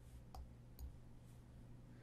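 Near silence with two faint computer mouse clicks, about a third of a second and most of a second in, over a low steady hum.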